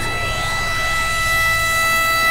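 Electronic dance music build-up: held synth tones over a low bass, with a synth sweep rising steadily in pitch like a siren.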